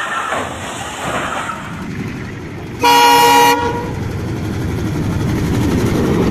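A train horn gives one short blast, under a second long, about three seconds in. Then comes the rumble of a train rolling past, which grows louder toward the end.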